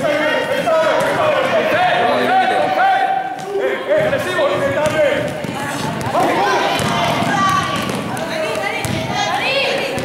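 Players and spectators calling out and talking in a sports hall, with a basketball being dribbled on the court floor.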